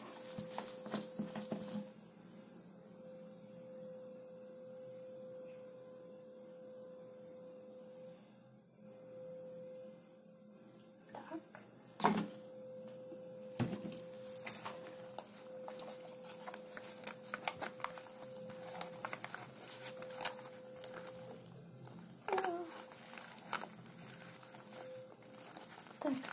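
Quiet slime-making handling: laundry gel poured from a large plastic bottle into a plastic tub, then gloved hands squishing and kneading the foamy slime, with scattered small clicks and crinkles. A faint steady hum runs underneath.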